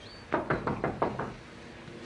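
Knocking on a door: a quick run of about six raps within about a second.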